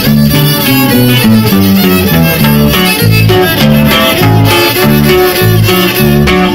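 A live band plays dance music loudly, with a fiddle carrying the melody over guitar and low notes that move on the beat.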